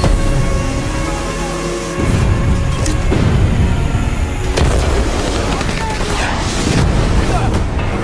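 Trailer score with deep booming hits; the heavy low booms come in about two seconds in, with sharp hits a little later.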